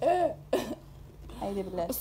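Young women's voices: two short vocal outbursts in the first second, then softer voices rising again near the end.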